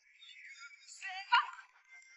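An edited-in comic "seal clapping" sound effect with a wobbling, high, voice-like pitch over background music. A single sharp knock comes near the middle.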